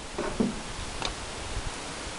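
Low, steady rumbling background noise, with a brief faint voice about half a second in.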